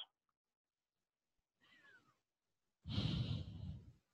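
Near silence, then about three seconds in a single breathy sigh from a person, lasting about a second.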